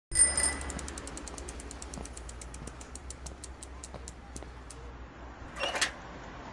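A bicycle bell rings at the start, then a spinning bicycle wheel's freewheel ticks rapidly, the ticks slowing as the wheel coasts down over about four seconds. A short whoosh comes just before the end.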